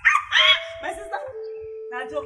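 Two short, loud vocal cries in the first half-second, then background music with a held note that steps down in pitch.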